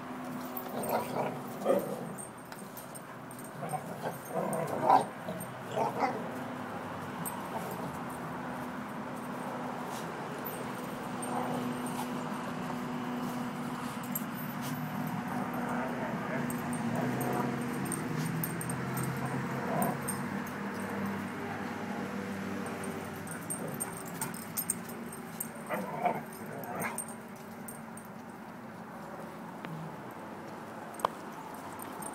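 Dogs vocalising as they play together: a handful of short, sharp calls in the first six seconds and again a little before the end, with a steadier, lower vocal sound between them.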